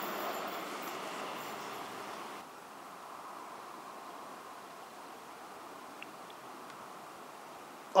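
Rumble of a passing electric train receding down the line, fading steadily until it cuts off abruptly about two seconds in. After that there is only faint, steady background noise.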